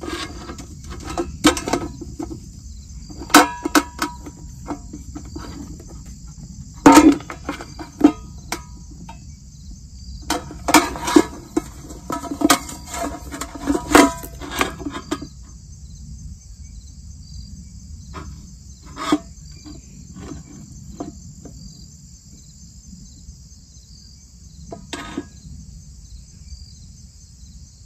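Steady high-pitched insect chorus of crickets, with repeated knocks and clatter from items being handled in a stainless steel stockpot, loudest about seven seconds in, then thinning out to single knocks in the second half.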